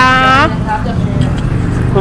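A woman's voice draws out a final syllable for about half a second. Then comes a steady low outdoor rumble of street background noise.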